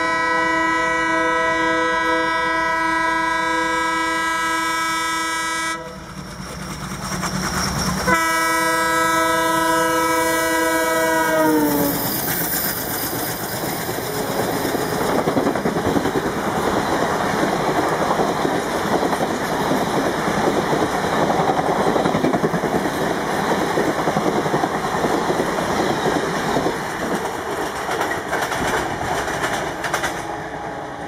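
WDM-3D ALCO diesel locomotive sounding its horn in two long blasts, the second falling in pitch at its end as the locomotive passes. Then the passenger coaches rush past with the clickety-clack of wheels on the rails.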